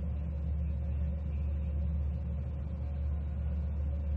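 A steady low hum with a faint, higher steady tone above it, unchanging throughout: background noise on the recording line during a pause in speech.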